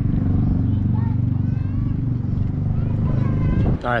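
A motor engine running steadily at a low pitch, with faint voices in the background.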